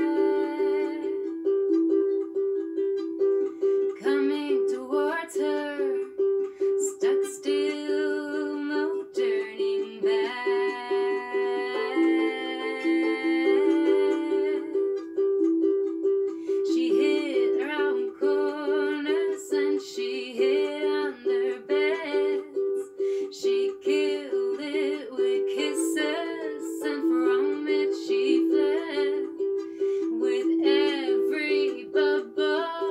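A harp and a nylon-string classical guitar playing a fast, steady repeated two-note figure, with a woman singing the melody over it.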